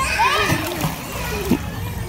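Swimmers splashing and kicking in a swimming pool, with faint children's voices in the background.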